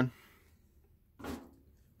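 Quiet room tone, with one short, soft sound a little past a second in.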